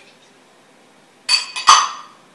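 Glass cup clinking twice in quick succession as it is set down, the second knock louder, with a brief glassy ring.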